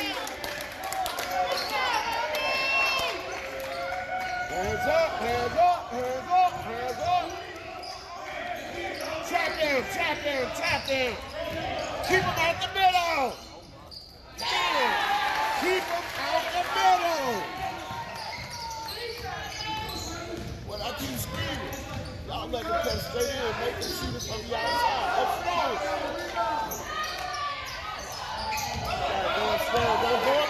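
Basketball game in a gymnasium: a ball bouncing on the hardwood court amid shouts and chatter from players, benches and spectators, echoing in the hall. The sound drops out briefly a little before halfway through.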